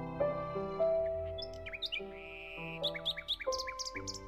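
Slow, soft piano music with small-bird chirps laid over it: a few short high chirps in the middle, then a quick run of chirps near the end.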